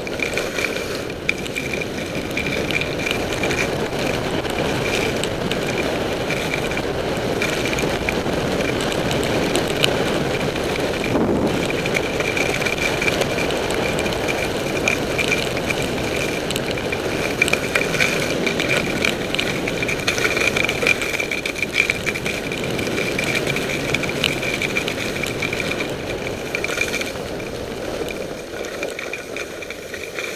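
Skis running and scraping over packed snow during a downhill run, with wind rushing over the microphone and a thin steady high whistle through it. It eases off near the end as the skier slows to a stop.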